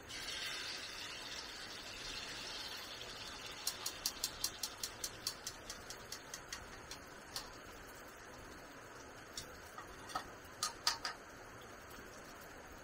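A beaten mixture poured from a bowl into a hot oiled wok sizzles, starting suddenly and dying away over about three seconds. Then come a run of light, quick clicks of chopsticks against the pan and bowl, slowing as they go, and a few sharper knocks near the end.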